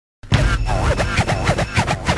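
Hip-hop turntable scratching: a record pushed back and forth in quick strokes, each a short squeal sweeping up and down in pitch, several a second, over a low bass line. It starts a moment in, after a brief silence.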